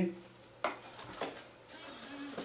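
A CD being fed into the slot-loading optical drive of a mid-2011 iMac, with two short, sharp clicks about half a second apart, over a faint steady hum.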